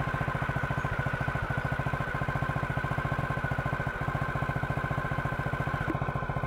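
An engine running steadily at idle, with a fast, even low pulse and a steady high whine over it.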